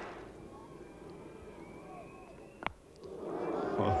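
Faint murmur of a cricket-ground crowd, with one sharp knock of bat on ball about two-thirds of the way through as a bouncer is hooked. The crowd noise swells right after.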